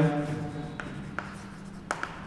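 Chalk writing on a blackboard: soft scratching strokes with a few sharp taps as the chalk strikes the board.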